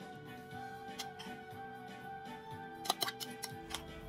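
Soft background music with held tones, and a few light clicks of a metal spoon against a glass bowl about three seconds in while chocolate ganache is stirred.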